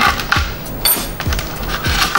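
Hobby knife blade cutting through foam board, making a few crisp cracks and crunches as it slices, with the loudest crack about a second in.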